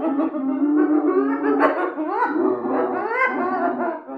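Spotted hyenas giggling: a run of short, pitched calls that rise and fall one after another, like someone laughing, over background music.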